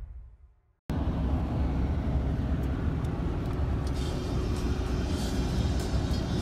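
The tail of the intro music fades out, and after about a second the steady road noise of a car driving along a highway starts abruptly, a low rumble that holds to the end.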